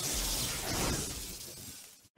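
Whoosh-and-crackle sound effect from an animated logo intro, with the last of the intro music, a hissing, crackling burst that fades away to silence near the end.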